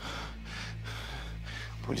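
A man breathing heavily and unevenly: breathy gasps about twice a second, over a low steady hum.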